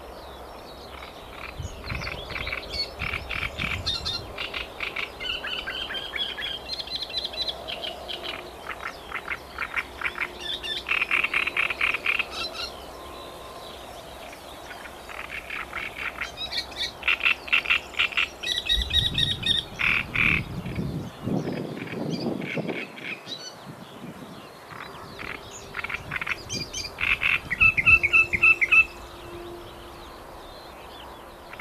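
Chorus of frogs croaking in rapid, pulsing bouts a few seconds long, one after another, with birds singing behind them.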